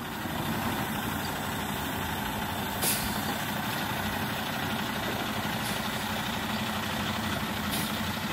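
Heavy diesel truck hauling an empty side-loader trailer, its engine running steadily as it creeps forward over dirt. About three seconds in there is a short hiss of air, like an air-brake release.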